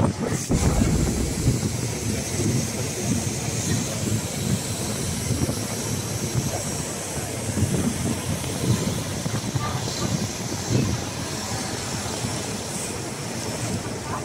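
Riverboat underway: its engine running steadily under the rush of water along the hull.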